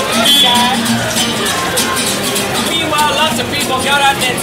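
A man singing to a strummed acoustic guitar.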